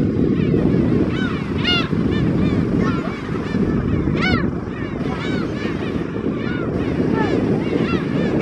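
A flock of black-tailed gulls calling again and again, many overlapping calls that each rise and fall in pitch, over a steady low rumble.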